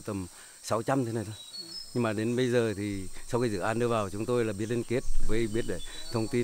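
A man speaking Vietnamese in short phrases, over a steady high chirring of insects.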